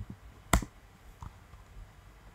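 A few separate computer keyboard keystrokes: a soft click at the start, a sharper one about half a second in, then fainter taps. They are the keys that stop the development server and bring back its run command in the terminal.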